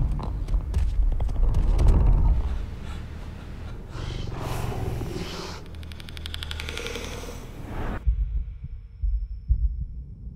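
Horror-trailer sound design: a low rumble with scattered clicks, then from about six seconds in a creature's rapid clicking snarl. It cuts off suddenly about two seconds before the end, leaving only low thuds.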